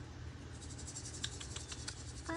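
Insects chirping in a fast, steady, high-pitched pulse that sets in about a quarter of the way in, with a few short ticks in the middle and a low steady hum underneath.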